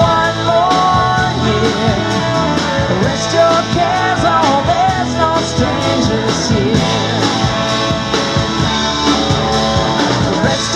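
Live rock band playing a song: guitars and a drum kit keeping a steady beat, with a lead vocal.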